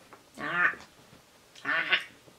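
A Pomeranian dog making two short, pitched whining vocal calls, one about half a second in and another near the end.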